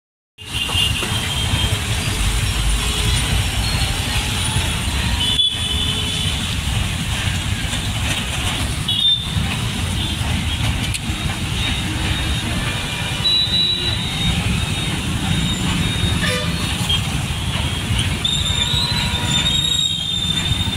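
Busy street traffic heard from a moving vehicle: steady engine and road rumble, with several short vehicle horn toots from the motorbikes, auto-rickshaws and buses around it.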